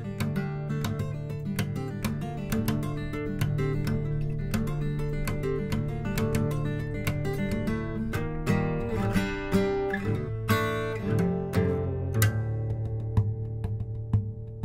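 Steel-string acoustic guitar in DADGAD tuning played fingerstyle: a quick run of picked notes over a ringing low bass drone, turning to harder strummed chords about eight seconds in.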